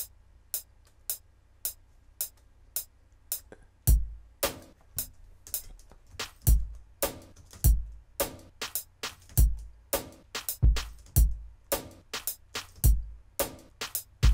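A drum loop being programmed in FL Studio's step sequencer at about 108 BPM. A steady click sounds on each beat, then kick drum and snare hits join about four seconds in. The beat grows busier as more steps are added.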